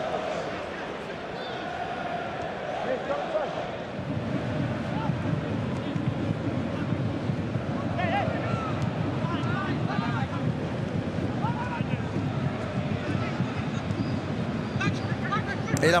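Live football match ambience in an empty stadium: a steady background wash that grows fuller about four seconds in, with occasional short distant shouts from the pitch.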